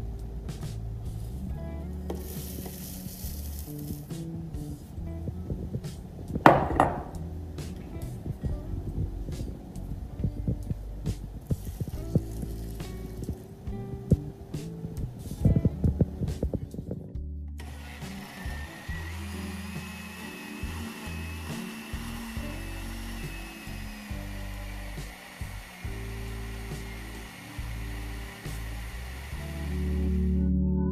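Countertop blender running on a protein shake, a hiss with a high whine that rises slightly and then holds, starting a little past halfway and cutting off just before the end. Before it come clicks and knocks of handling as ingredients go into the jug, one louder knock among them, all over background music.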